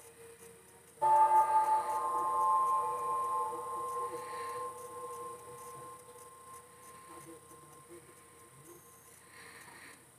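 Film-trailer score: a single sustained chord of several steady tones enters suddenly about a second in and slowly fades away over the following seconds.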